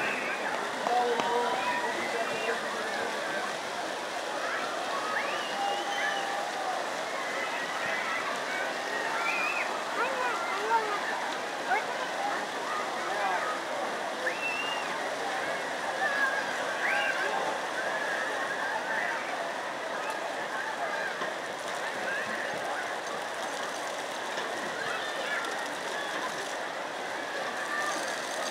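Pond fountain jets splashing into the water, a steady rush, with scattered distant voices of children and adults over it.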